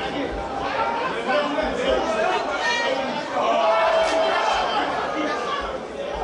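Spectators' chatter: several voices talking at once and overlapping, with no single voice standing out.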